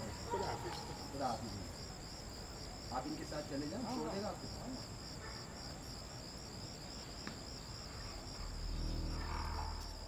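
Crickets trilling steadily, a high pulsing chirr that runs without a break, with a low hum coming in near the end.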